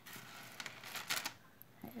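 Small clicks and rustling of costume jewelry being handled, a metal charm on its chain and a beaded necklace, with a few sharp clicks about a second in. A voice says "Hey" near the end.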